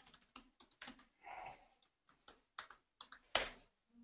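Typing on a computer keyboard: a run of irregular keystrokes as an email address and password are entered, with one harder key strike a little before the end.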